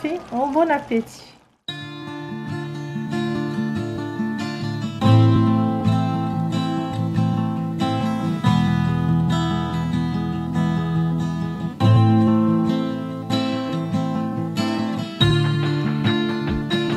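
Background music with a plucked acoustic guitar, starting abruptly after a short gap about a second and a half in, following a few spoken words at the very start.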